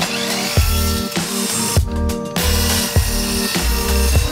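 Background music with a steady beat, under which a Scheppach electric mitre saw runs and cuts through a wooden picture-frame moulding. The saw noise breaks off for about half a second near the two-second mark, then runs again.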